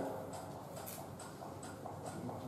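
Faint, regular ticking, a little over two ticks a second, over low room noise.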